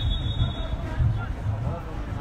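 Faint, distant shouting of players and coaches across an outdoor football pitch, over a low, uneven rumble.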